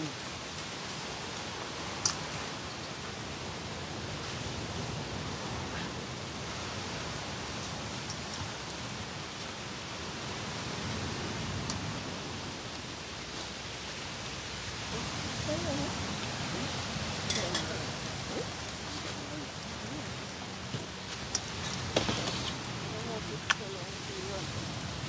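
Steady rushing background noise with faint distant voices, broken by a few sharp clicks about two seconds in and again near the end.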